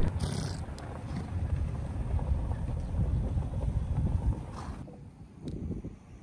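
Low rumbling noise of wind buffeting the microphone, dropping away about five seconds in to a quieter background with a few faint knocks.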